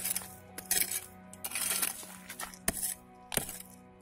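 A small metal digging tool strikes and scrapes into stony, gravelly soil, about five strokes a little under a second apart, with clinking against stones. Background music plays steadily underneath.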